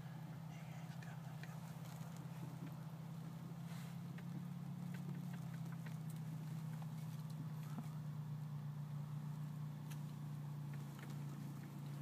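A steady low mechanical hum, like a motor running, with a few faint clicks over it.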